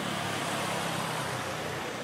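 Street traffic noise: motor vehicles running along the road, a steady rush of engines and tyres with a low engine hum underneath.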